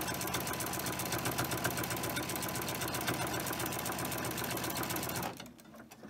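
Baby Lock sewing machine with a walking foot stitching a straight quilting line through fabric and batting, running steadily and then stopping about five seconds in.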